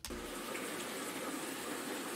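Water pouring steadily into a stainless steel tank. It is the pure water removed from maple sap by reverse osmosis.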